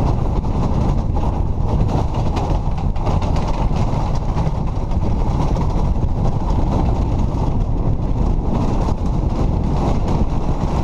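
Bobsled's steel runners sliding fast down an ice track, heard from inside the sled: a loud, steady rumble with constant fine rattling chatter.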